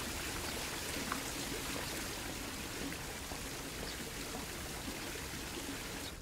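Steady, even rushing noise like running water, which cuts off suddenly at the end.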